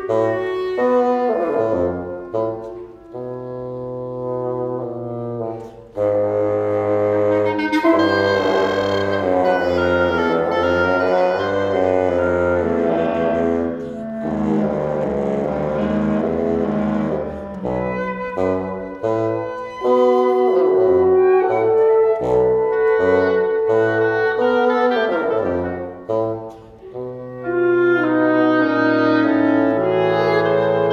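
Live wind quintet with bassoon, clarinet and French horn playing contemporary chamber music: intertwined sustained lines that echo one another, built on chromatic steps and fifths. A sparser, quieter opening thickens into a dense, loud stretch from about six seconds in.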